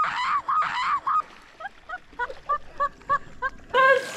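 High-pitched, squealing laughter in rapid repeated bursts, loud for the first second, then trailing off into shorter, quieter gasps of laughter.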